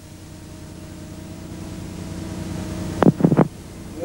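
Steady hum with two even tones under a slowly rising hiss, the background noise of an old film soundtrack. About three seconds in comes a short cluster of three sharp sounds.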